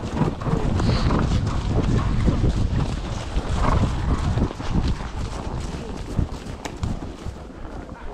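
Hoofbeats of ridden horses on a soft, leaf-covered woodland track, under a heavy rumble of wind buffeting an action camera's microphone mounted on the rider.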